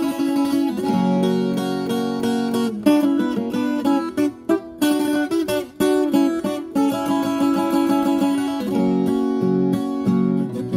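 Ten-string viola caipira played solo: a continuous run of picked notes on its paired steel strings, with a couple of brief gaps between phrases.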